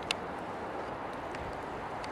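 Steady outdoor background noise, a hiss with a low rumble, with one short click just after the start.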